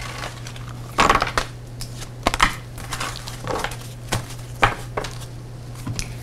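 Tarot cards being gathered up and slid together on a wooden tabletop: a few separate scrapes and light taps, over a steady low hum.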